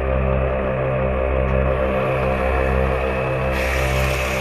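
ARB twin air compressor running steadily under load, a constant hum, while inflating two 34-inch tires at once through a dual inflator as the pressure climbs past 45 psi.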